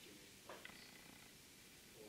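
Near silence: faint room tone with a soft, brief click about half a second in.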